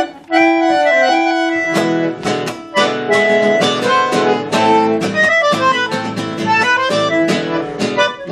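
Bandoneón and acoustic guitar playing an instrumental break: the bandoneón holds long notes for the first two seconds, then plays a moving melody over rhythmic strummed guitar chords.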